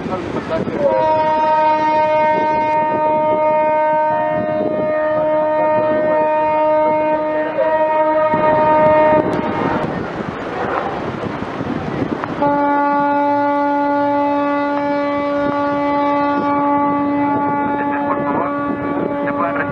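Ship's horns sounding two long steady blasts, the first lasting about eight seconds and the second starting about twelve seconds in, slightly lower in pitch.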